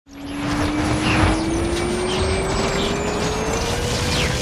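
Action-film battle sound mix: a dense mechanical rumble with a steady tone slowly rising in pitch, and a faint high tone slowly falling.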